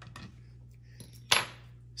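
A single sharp clink of a small metal hand tool set down on a hard surface, about a second and a half in, with a few faint handling ticks before it.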